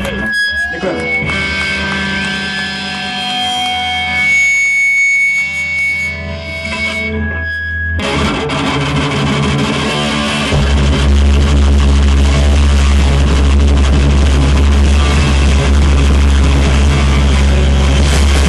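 Live hardcore punk band: for the first several seconds, held electric guitar tones and feedback ring through distortion. At about eight seconds the full band comes in with distorted guitars, bass and drums, and a heavy low end builds from about ten seconds.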